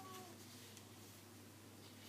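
Near silence: low steady room hum, with a brief faint falling tone right at the start.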